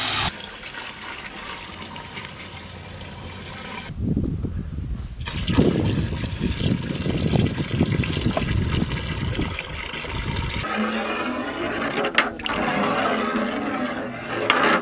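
Water poured from a large plastic can into a big metal cooking pot of chopped vegetables: a loud, steady gushing splash from about four seconds in that changes to a lighter hiss near the end.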